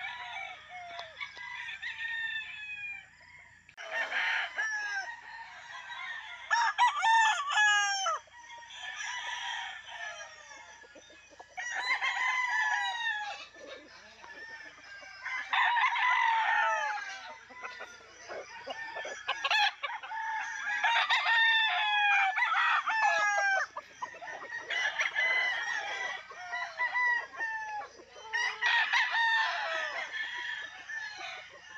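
Several gamefowl roosters crowing again and again, one crow after another every few seconds, some overlapping.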